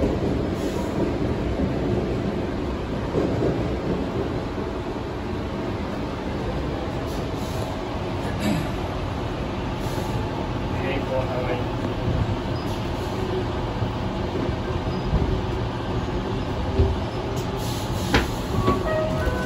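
Interior running noise of a Sydney Trains double-deck electric train: a steady rumble of wheels on track with a little rattle. It runs out of a tunnel and slows along an underground platform.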